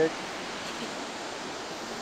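Cross River Falls, a waterfall, roaring with a steady, even rush of falling water.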